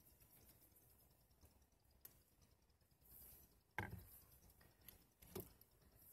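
Near silence, broken by a few faint knocks from handling, the clearest about four seconds in and another about a second and a half later.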